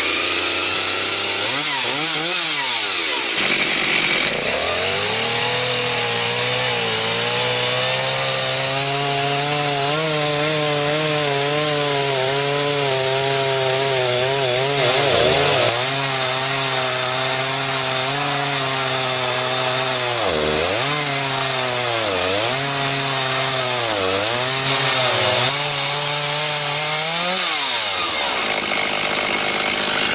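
Stihl chainsaw mounted in an Alaskan chainsaw mill, ripping lengthwise through a cherry log at full throttle to cut a board. The engine note holds steady under load and dips in pitch briefly several times as the cut bogs it, each time recovering, with a deeper dip near the end.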